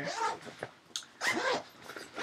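Rustling of a backpack being rummaged through as items are pulled out, with a short scrape about a second in, between brief bits of a woman's voice.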